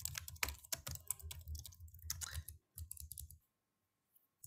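Computer keyboard being typed on: a quick, irregular run of key clicks that stops about three and a half seconds in.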